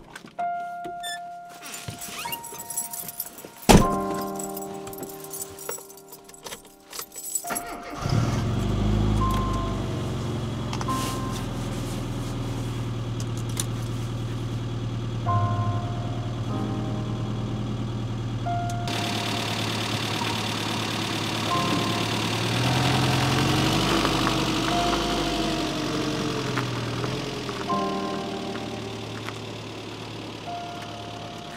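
Clicks and rattles, a single loud thud about four seconds in, then a Rover Mini's A-series four-cylinder engine starting about eight seconds in and idling steadily.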